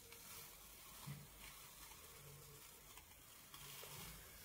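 Very faint crackle of thick watercolour paper being peeled off a tacky gel printing plate, lifting the acrylic and gel-medium image transfer.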